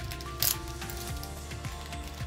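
Background music under the crinkle and tear of a foil Pokémon booster pack wrapper being opened by hand. A short, sharp noise about half a second in is the loudest moment.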